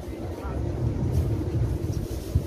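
A low, uneven rumble, with faint voices under it.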